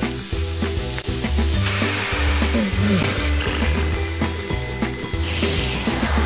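Cartoon sound effect of food sizzling in a frying pan, setting in about two seconds in, over background music with a steady bass line.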